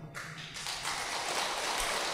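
A pause between sentences filled by a steady, hiss-like background noise at low level.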